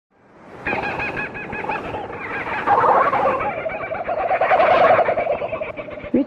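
Bird calls played at the opening of a shortwave broadcast and received by radio: rapid, repeated chattering phrases over the band's hiss, fading in at the start and growing louder about halfway through.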